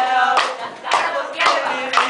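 A group clapping hands in a steady rhythm, about two claps a second, with male voices chanting along between the claps.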